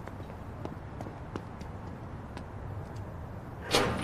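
Faint footsteps on a paved lane, irregular light taps over a low steady background hum, with a louder sharp click near the end.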